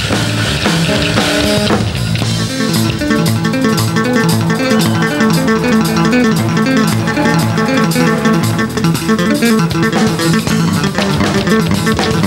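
Live band music: a drum kit played hard with cymbal crashes for about the first two seconds, then an electric bass guitar playing a quick, busy melodic line over the drums.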